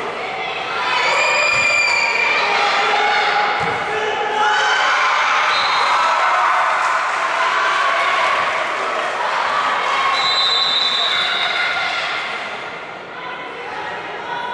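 Many high voices shouting and calling over one another in a large, echoing sports hall during a volleyball rally, with a few sharp ball hits cutting through.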